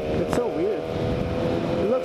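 Sport motorcycle engine running at a steady cruising speed, with wind and road noise rushing past a helmet-mounted microphone.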